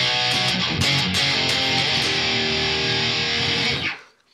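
Heavily distorted electric guitar through the Otto Audio 1111 amp-sim plugin on a 5150-style high-gain preset, with its stereo doubling effect engaged for a very full tone. A few picked chords are followed by a chord held for about two seconds, which is cut off sharply just before the end.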